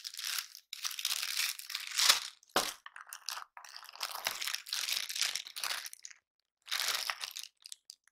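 Plastic bag and paper packaging crinkling and rustling in stop-start bursts as hands pull a bagged power cable out of a camera box, with a louder, sharper crackle about two seconds in.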